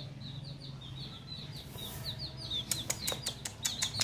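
A baby chick peeping steadily: short, high, falling chirps about three a second. From about three seconds in, a run of sharp clicks joins them.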